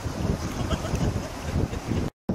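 Wind buffeting the microphone in a constant low rumble, over the wash of shallow surf.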